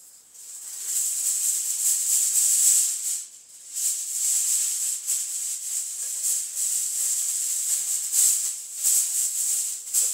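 A loud, high-pitched hiss that wavers in level and dips briefly about three and a half seconds in.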